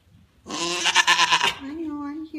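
African Pygmy goat bleating: one loud, wavering bleat lasting about a second, followed by a softer, lower call.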